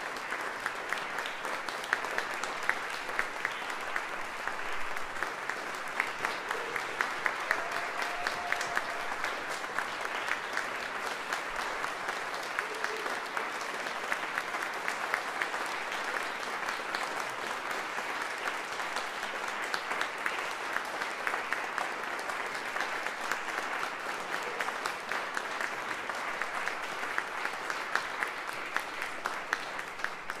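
Audience applauding steadily, a dense mass of hand claps with sharper individual claps standing out.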